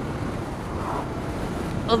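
Steady wind rush on a helmet-mounted microphone with a motorcycle's engine and road noise underneath, from a sportbike cruising at road speed.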